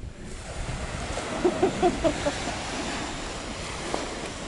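Surf breaking on a sandy beach, an even rushing noise, with wind buffeting the microphone. A quick run of short pitched sounds comes about a second and a half in.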